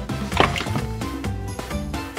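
Background music with a single short splash-and-knock about half a second in, as a small plastic toy figure is dropped into a shallow toy bathtub of water.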